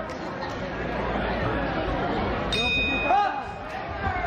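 Boxing ring bell struck once about two and a half seconds in, a single clear metallic ring that fades over about a second, signalling the start of the round. Crowd chatter echoes around it in a large hall.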